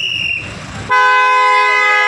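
A vehicle horn held in one steady blast for about a second and a half, starting about a second in. A brief high-pitched tone sounds right at the start.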